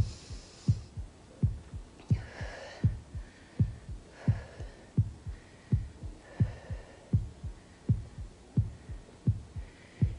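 Heartbeat sound effect: a steady run of low thumps, about one every 0.7 seconds, marking time for a ten-second pulse count.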